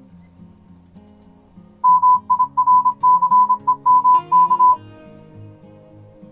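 Morse code (CW) tone of about 1 kHz keyed in rapid dots and dashes for about three seconds, starting about two seconds in. The decoder reads it as the word 'mircemk' at about 33 words per minute. Soft acoustic guitar music plays underneath.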